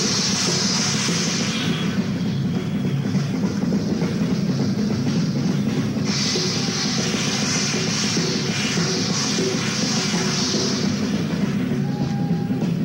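Hard rock band playing live on electric guitar and drum kit, heard through an audience recording, with a bright high wash in the first couple of seconds and again from about six to eleven seconds in.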